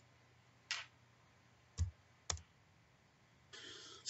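Three faint, separate clicks from computer controls, such as those used to advance a slide, spread over the first two and a half seconds, then a short breath in near the end.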